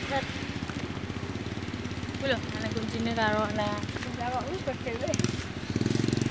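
A small engine running steadily, a low drone with a fast even pulse.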